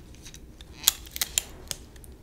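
A few sharp little clicks from a small object being handled in the fingers close to the microphone, bunched in the second half.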